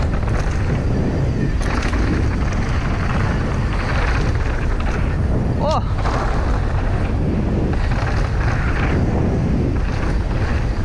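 Wind buffeting the rider's camera microphone over the steady rumble and rattle of a downhill mountain bike rolling down a rough dirt and gravel trail. A brief pitched chirp sounds a little past halfway.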